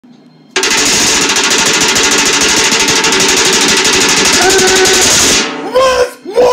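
Red plastic spatula chattering against the inside of a stainless steel pot, a loud fast buzzing rattle that starts suddenly about half a second in and stops shortly before the end. Near the end short pitched sounds rise and fall.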